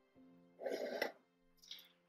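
Soft background music with steady held notes. Just over half a second in, a short scraping, handling noise lasting about half a second as the plastic UV lamp is moved on the wooden table, then a smaller one about a second later.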